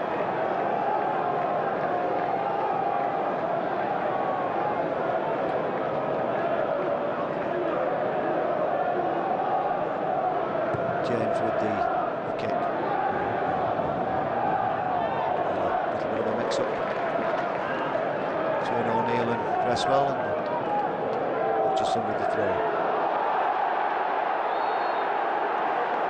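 Football stadium crowd noise: a steady mass of voices with a wavering, drawn-out chant running through it. Occasional sharp knocks of the ball being kicked cut through.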